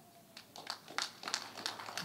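A faint, short falling tone at the start, then a dozen or so faint, irregular clicks and taps over about a second and a half, over quiet room tone.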